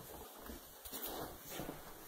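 Faint, irregular rustling and soft scuffs very close to the microphone.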